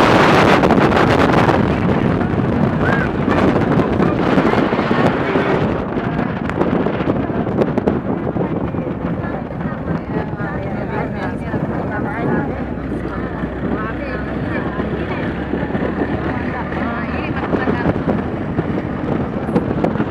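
Wind rushing over a phone microphone while moving along a road, with a steady vehicle running noise underneath. Faint indistinct voices come through in the middle of the stretch.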